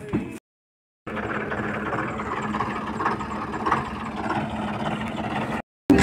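Vehicle engine running steadily, heard from inside the cab, with a constant low hum under a steady rumble; it starts suddenly about a second in and cuts off just before the end.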